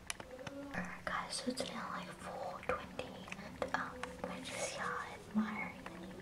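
A person whispering quietly, with a few soft clicks from handling.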